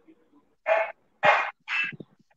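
Three short calls from an animal, about half a second apart, the middle one the loudest.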